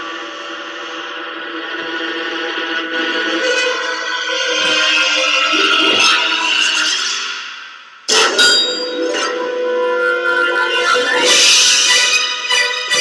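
Soundtrack music of a computer-animated short film: sustained layered chords swell slowly and fade away, then a sudden loud entry about eight seconds in starts a busier passage with sharp accents.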